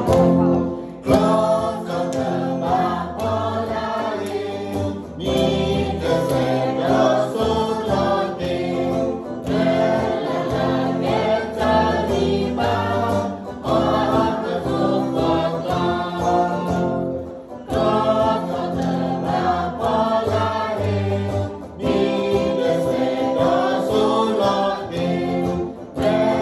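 Women singing a song together in Karen, with electric guitar accompaniment, phrase after phrase with short breaths between lines.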